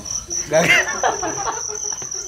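Crickets chirping in a steady, high, pulsing trill, with a loud burst of laughter over it about half a second in.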